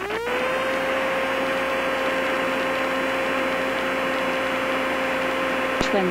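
Jabiru UL-450's engine at takeoff power, heard through the headset intercom: a steady dull roar with a whine that climbs over the first half second, then holds at one pitch.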